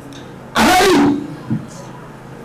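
A man's voice through a microphone: one short, loud word or exclamation about half a second in, then a brief smaller vocal sound about a second in.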